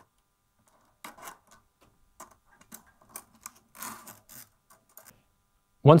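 Faint, irregular small clicks and scrapes of a metal guitar string being fed through the hole of a tuning peg and handled at the headstock. They start about a second in and stop shortly before the end.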